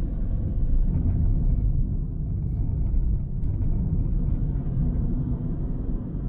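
Steady low rumble of a car being driven: road and engine noise.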